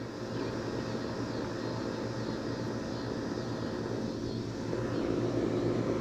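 A steady low mechanical drone with a constant low hum underneath, growing a little louder in the second half.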